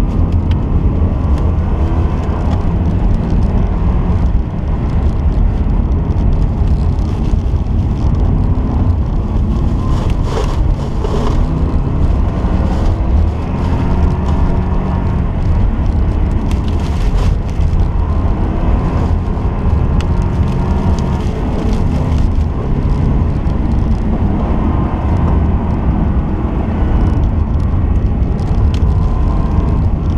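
A stock 2002 Subaru WRX's turbocharged flat-four engine is heard from inside the cabin under hard racing, its revs rising and falling as it is driven on studded tires over ice, over a constant heavy low rumble. A few brief sharp noises stand out about ten and seventeen seconds in.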